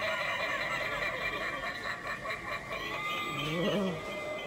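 Steady indoor shop hum, and near the end a short voice-like sound whose pitch wavers up and down.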